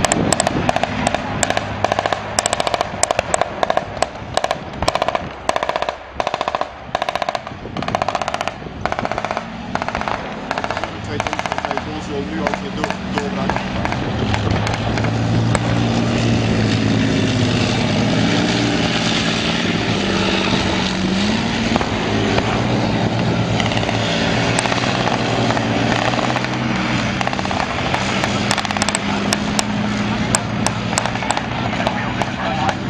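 Rapid gunfire, many shots in quick irregular succession for about the first twelve seconds. Then a Leopard 2A6 tank's V12 diesel engine runs as the tank drives, its pitch rising and falling in the middle, with a few more shots near the end.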